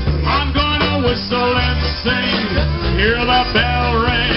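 Live polka band playing: accordion melody over a stepping bass line and steady drums, in a bouncing polka rhythm.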